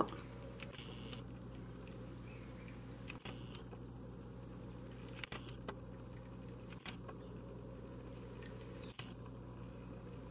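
Quiet room tone: a low steady hum with a few faint clicks scattered through.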